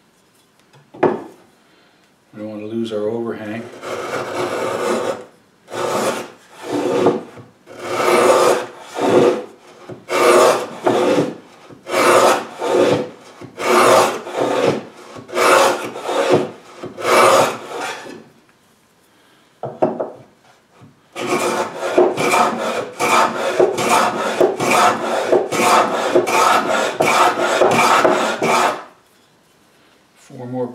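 Shoulder plane shaving a wooden edge in repeated strokes, trimming a little more off so the piece fits. The strokes come about one a second at first, then after a short pause in a faster run that stops shortly before the end.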